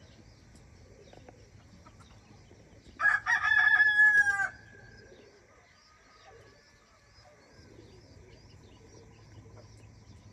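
A single loud, drawn-out bird call lasting about a second and a half, starting about three seconds in and dipping slightly in pitch at its end. Faint high chirping of small birds continues underneath.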